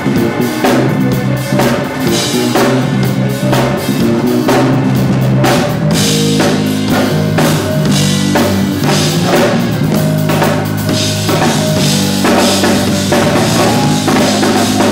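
Live gospel band jam: a Tama drum kit played in a busy groove of snare, bass drum and cymbal hits, over held bass guitar and organ notes.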